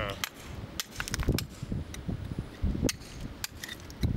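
Hammer tapping a steel chisel into mudstone: about half a dozen sharp taps, unevenly spaced, as a trench is cut around a fossil to lift it out.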